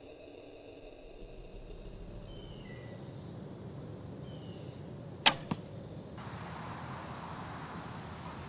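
A traditional bow shot: the bowstring released with a sharp snap about five seconds in, followed about a quarter second later by a smaller knock of the arrow striking the foam 3D target.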